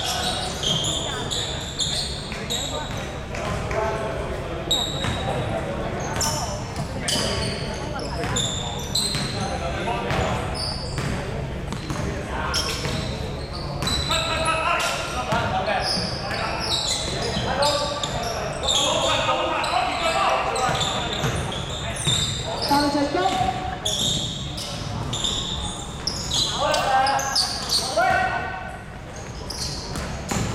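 Indoor basketball game in an echoing sports hall: the ball bouncing on a wooden court amid players' feet, short high shoe squeaks, and players calling and shouting.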